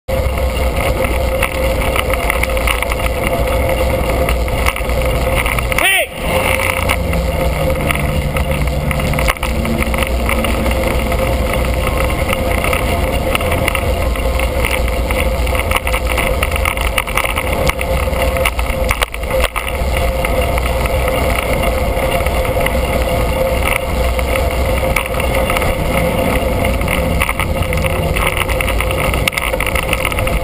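Steady wind rumble and road and traffic noise on a bicycle-mounted camera while riding in city traffic, with a brief sharp sound about six seconds in.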